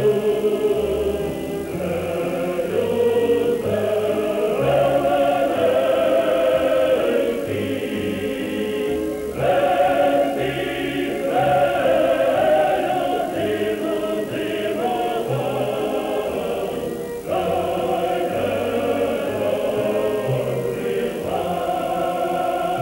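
Background music: a choir singing slow, held chords over low bass notes, sounding muffled.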